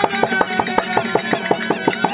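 Traditional Therukoothu accompaniment: fast, evenly spaced hand-drum strokes, several a second, over sustained harmonium notes.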